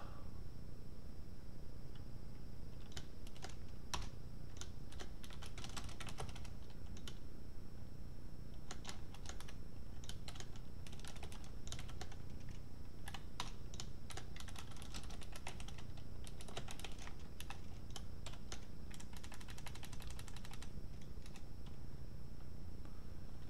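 Typing on a computer keyboard: short irregular bursts of keystrokes with brief pauses between them, as code is entered.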